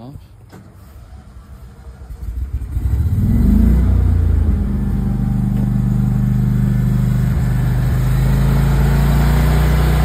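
Briggs & Stratton 22kW PowerProtect home standby generator's V-twin engine, fuelled by natural gas, starting by itself after the utility power is cut. It comes in about two seconds in, rises in pitch as it spins up to speed, and settles into a steady run by about halfway.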